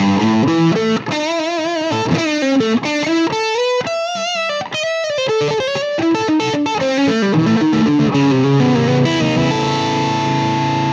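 Gibson Les Paul Custom electric guitar, both humbucking pickups on together, played through an amp. It plays quick single-note lines with wide vibrato wobbling the held notes, and settles on a held chord near the end.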